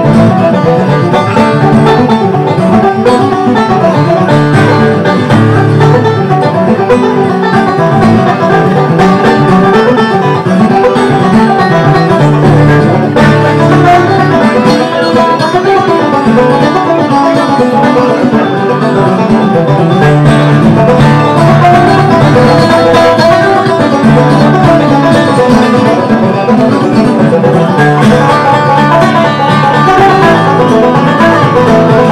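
Five-string resonator banjo and flat-top acoustic guitar playing a bluegrass fiddle tune together at a steady, brisk pace.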